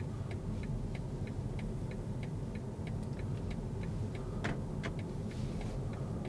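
Car turn-signal indicator ticking steadily, about three ticks a second, heard inside the BMW's cabin over the low rumble of engine and tyres, with one louder click a little after four seconds in.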